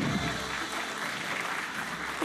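Studio audience applauding, with many hands clapping together in a dense, steady patter that begins with an abrupt cut.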